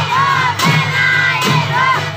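A woman singing into a microphone amid a lively group of women, over a steady beat that falls about every 0.8 seconds.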